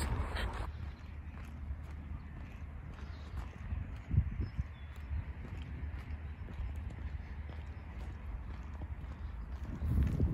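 A person's footsteps walking along a paved path, with a low steady rumble underneath and one louder step about four seconds in.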